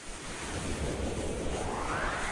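A whoosh sound effect: a rushing noise sweep that rises steadily in pitch.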